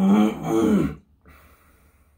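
A man's short laugh, about a second long, followed by a faint breath out.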